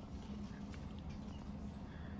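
A dog panting softly over a steady low room hum, with a few faint clicks about a second in.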